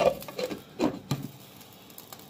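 Glass pot lid being set onto a stewpot, knocking and rattling on the rim: about four short knocks in the first second and a half, then quiet simmer noise.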